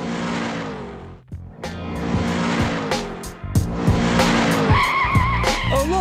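Cartoon sound effect of a hot rod engine revving and tyres skidding, the engine note dropping several times as the car pulls up.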